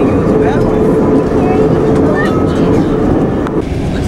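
Steady low rumble inside a moving vehicle, with indistinct voices of passengers talking over it and a steady hum that stops abruptly near the end.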